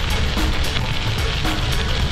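Bicycle tyres rolling over a loose gravel road, a steady crunching rumble mixed with wind noise, with background music underneath.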